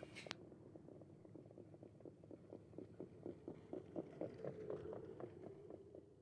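Faint hoofbeats of harness horses on the dirt track, a steady run of about four beats a second that grows a little louder, over a low steady hum.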